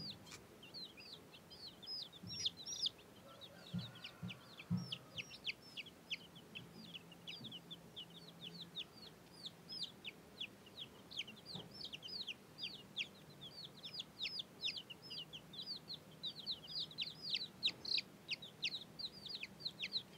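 A brood of baby chicks peeping nonstop, short high calls that each slide downward in pitch, overlapping at about four or five a second.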